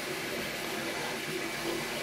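MakerBot Replicator 2 3D printer running: a steady fan hiss with a faint hum that breaks off and comes back several times.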